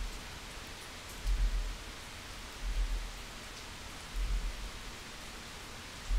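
Steady hiss of a desktop recording's background noise, with three soft low thumps about a second and a half apart.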